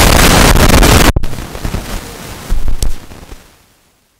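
Loud, distorted noise on the livestream's sound feed, with no speech in it. It cuts off abruptly about a second in. A fainter hiss follows, with one sharp crack near three seconds, then fades into dead silence.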